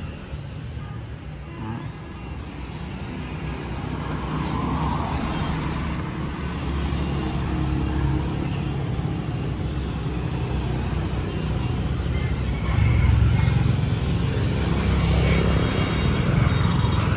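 Low, steady motor vehicle engine rumble that slowly grows louder and is loudest about thirteen seconds in.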